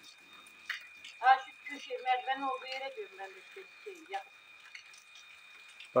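A person talking, quieter than the nearby speakers, for about three seconds in the middle, over a faint steady high-pitched tone.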